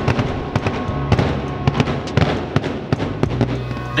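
Aerial fireworks going off: a fast, irregular string of sharp bangs and crackles, several a second.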